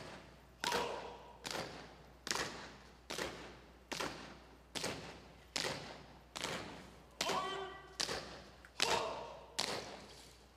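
Honor guard color team marching in step across a stage. About twelve sharp footfalls fall evenly, a little over one a second, each ringing on briefly in the hall.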